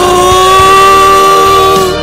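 A male singer holding one long high note into a microphone over a rock-band backing; the note breaks off just before the end.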